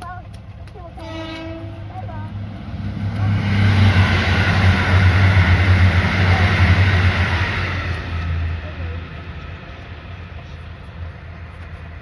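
A train horn sounds one short toot about a second in, then a JR limited express train passes close by at speed: the rush of wheels on rail and a low hum build up, are loudest in the middle, and fade away.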